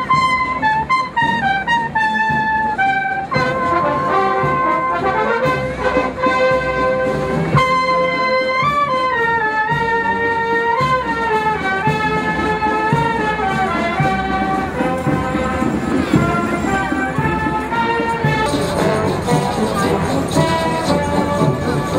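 Salvation Army brass band playing a tune in several parts while marching.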